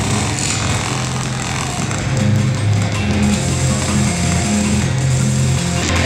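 Loud noisy electronic music from a performance video played over the room's speakers: a dense hiss-like wash over a low bass drone that steps between a few pitches every half second or so.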